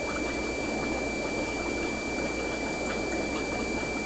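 Steady bubbling and trickling of water from air-driven aquarium sponge filters, with a thin steady high tone over it.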